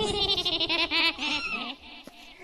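A man wailing in a long, wavering, bleat-like cry that breaks a few times and fades out near the end.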